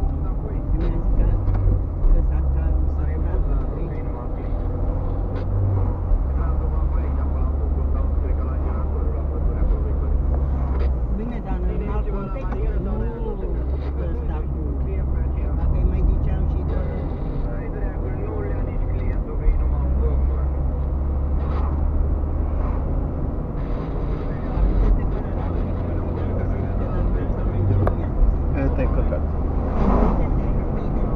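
Steady low rumble of a car driving, heard inside the cabin: engine and tyre noise on the road. Indistinct voices come in at times, most clearly around the middle.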